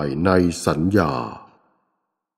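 Speech only: a voice reciting a line of Thai Buddhist scripture, ending about one and a half seconds in.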